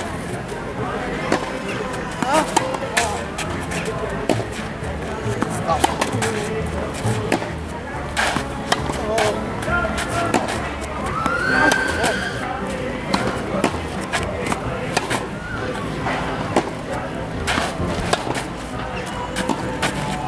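Tennis rackets striking a ball again and again at irregular intervals during a rally, with voices in the background.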